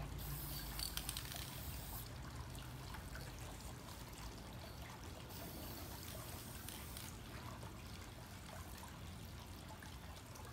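Aerosol can of Krylon workable fixative spraying in two hissing bursts of about two seconds each, the second starting about five seconds in. A steady trickle of water runs underneath.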